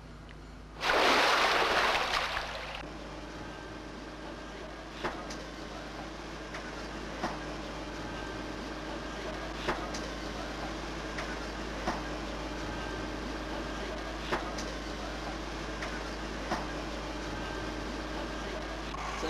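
A loud rushing splash of water in the submarine escape training tank, lasting about two seconds. After it, a steady mechanical hum with a faint tick about every two seconds.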